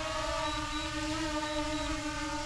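Original DJI Mavic Air quadcopter flying overhead, its propellers giving a steady whine.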